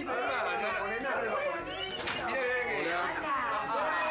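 Several people talking at once, their voices overlapping, with a single sharp click about halfway through.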